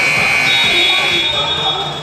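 Basketball scoreboard buzzer sounding one long steady high tone, a second higher tone joining it about half a second in, cutting off shortly before the end: the signal ending a timeout.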